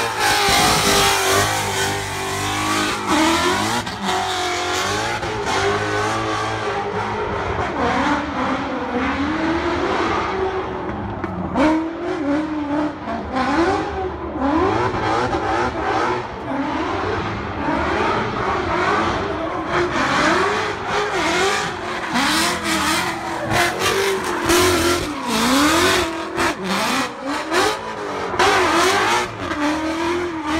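Ford Mustang drift car's engine revving up and down over and over as it slides sideways, with tyre noise from the spinning rear wheels.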